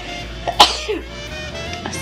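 A woman coughs once, sharply, with her hand at her mouth, over soft background music.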